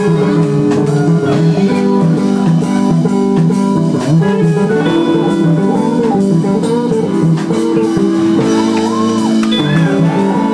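A small live band jamming on electric guitar, bass and drum kit, with a lead line that bends notes.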